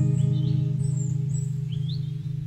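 A strummed acoustic guitar chord, the song's closing chord, ringing on and slowly fading, with a few short high bird chirps over it.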